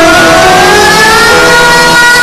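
Song with accompaniment: one long held sung note that slowly rises in pitch.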